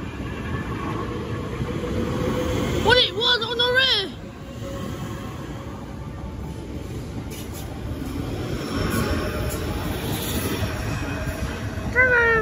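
Electric multiple-unit passenger train pulling out past the platform, a steady rumble of wheels and traction on the rails. About three seconds in, a loud pitched sound wavers up and down a few times.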